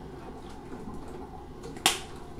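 Quiet handling of a plastic spice bottle, with one sharp click near the end.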